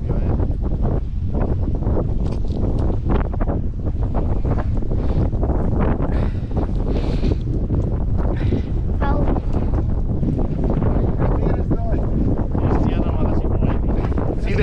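Strong wind buffeting the microphone, a steady low rumble.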